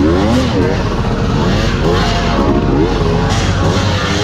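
Enduro motorcycle engines revving, their pitch rising and falling several times over as the throttle is blipped through a tight turn on dirt.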